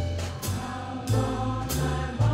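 Mixed choir singing in harmony with a small jazz combo: an upright bass moves through deep notes under the voices while drum-kit cymbals tap along.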